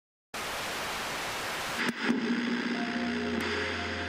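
Old CRT television static: a steady hiss that breaks off with a click after about a second and a half, followed by a low hum and a few steady electronic tones.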